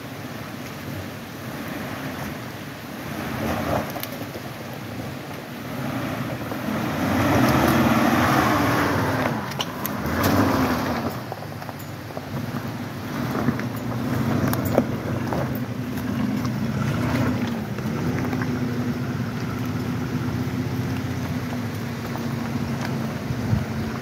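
Nissan Xterra SUV engine revving up and down as it crawls through a rocky creek and climbs out, with a burst of water splashing and noise about a third of the way in and occasional sharp knocks from the tyres on rocks. The engine then settles to a steadier pull up the trail.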